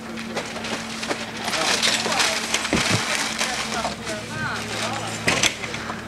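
Newspaper crumpling and rustling as it is stuffed into a padded jacket, loudest in the first half, with a sharp knock a little after five seconds and faint voices behind.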